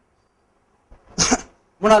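A single short cough from a person, a little over a second in.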